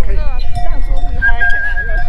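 A yak herder whistling long, steady held notes to his yak, with a second, higher note coming in a little past halfway. Wind rumbles on the microphone underneath.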